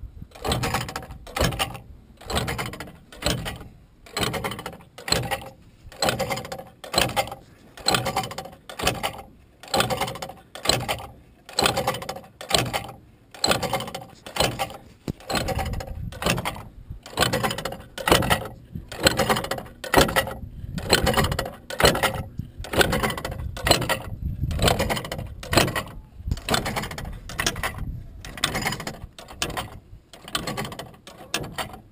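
Magnetic Flagman wigwag crossing signal mechanism running, its electromagnet drive swinging the pendulum arm back and forth with a regular clanking, about three strokes every two seconds.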